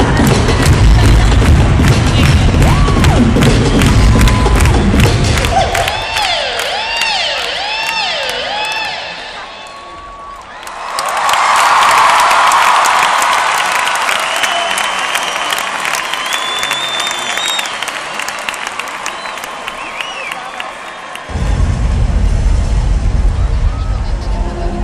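Live electronic dance music in an arena, recorded from the crowd: a heavy bass beat, then about six seconds in the bass drops out for a breakdown of wavering tones sliding up and down. The crowd cheers loudly about halfway through, and the bass beat crashes back in about three seconds before the end.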